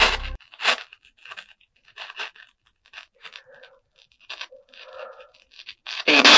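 Handheld spirit box radio sweeping through stations: a rapid string of choppy bursts of static and clipped radio fragments, each a fraction of a second long, with brief gaps between them.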